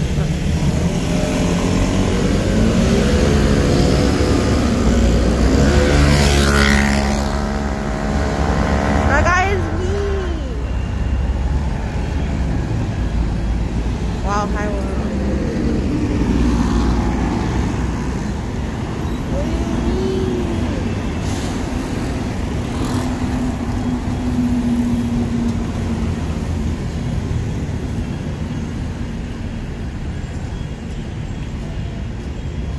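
City street traffic: motor scooters and cars passing close by, their engines rising in pitch as they pull away, several times, over a constant low rumble of traffic.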